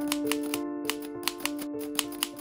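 Typewriter key strikes, irregular, about five a second, over slow background music with held notes.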